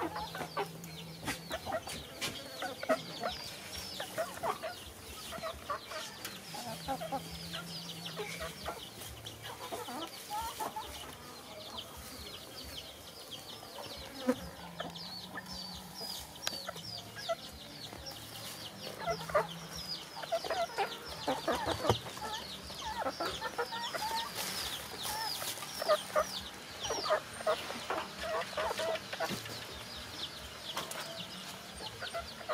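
Chickens clucking, with many high, falling chirps a second throughout.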